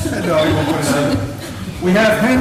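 Indistinct talking: people's voices, with no clear words.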